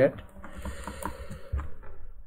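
Computer mouse scroll wheel turned quickly, giving runs of faint irregular ticks.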